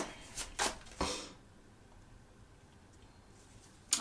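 A tarot deck being shuffled by hand, with a few soft card slaps and rustles in the first second or so, then near quiet, and a light click of a card near the end.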